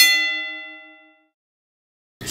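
A single struck metallic bell-like ding, an edited sound effect, ringing out and fading away within about a second.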